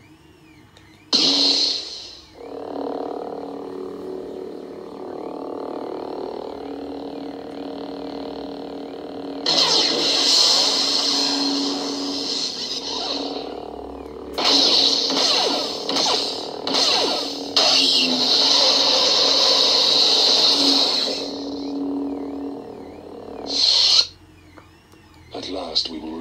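Proffieboard lightsaber sound font played through the hilt's small speaker: the ignition sound about a second in, then a steady electric hum. Two long, louder effect sounds come in the middle, and the retraction sound comes near the end.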